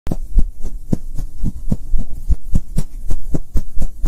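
Logo-intro sound effect: an even, low thumping pulse like a heartbeat, about four beats a second, over a steady low hum.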